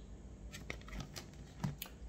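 Faint light clicks and rustles of a card being handled and set in place by hand, starting about half a second in, with a slightly louder tap or two near the end.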